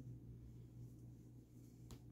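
Near silence: room tone with a low steady hum and one faint click near the end.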